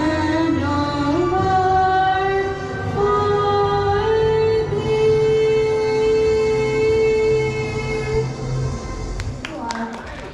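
A girl singing solo into a microphone, a slow melody that ends on one long held note, which fades about eight seconds in. A few sharp clicks follow near the end.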